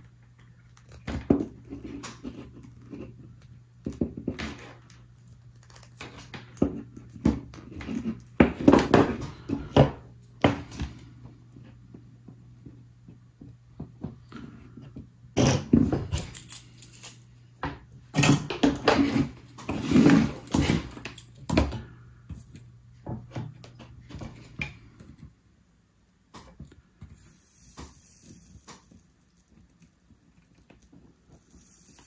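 Clicks, taps and rustling of needle-nose pliers, wire and a metal crocodile clip being handled on a workbench as the clip is crimped onto the wire, the loudest bursts about 9, 16 and 20 seconds in. A steady low hum runs beneath until it stops near the end.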